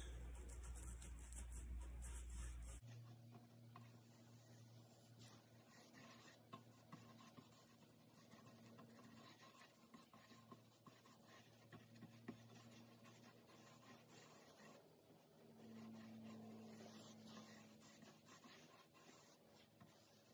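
Faint scratching and rubbing of a bristle paintbrush working epoxy sealer into rough live-edge bark, with a few small ticks and a faint low hum underneath.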